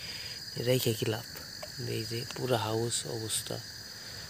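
Crickets chirring in a steady, high trill, with two short stretches of people talking over it.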